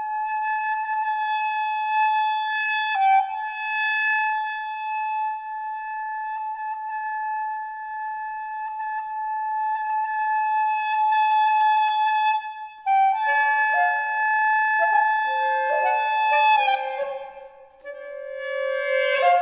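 Saxophone quartet playing contemporary microtonal music. One saxophone holds a long high note for about thirteen seconds, then the other saxophones come in with shorter notes that step downward, with a brief drop in level near the end.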